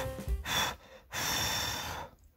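Breathy mouth sounds of a person eating cup noodles: a short burst, then a longer steady one of nearly a second, as the noodles are blown on and drawn into the mouth.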